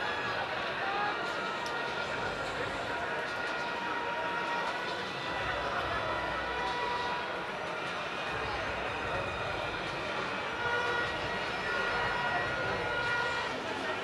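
Crowd of many people talking at once in a steady hubbub, with a few faint steady tones held underneath.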